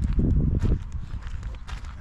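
Footsteps crunching on loose gravel, a run of quick steps that is loudest in the first second and then softer.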